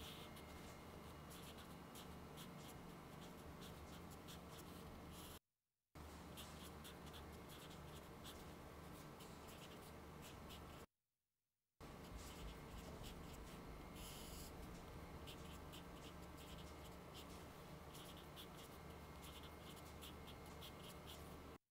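Faint scratching of a marker pen on paper as equations are written, in many short strokes over a low steady electrical hum. The sound drops out completely twice for under a second, about five and eleven seconds in.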